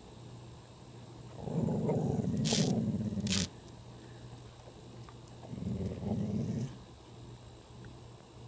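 A dog growling low at a cicada on the ground: two growls, the first about two seconds long with two sharp clicks inside it, the second about a second long.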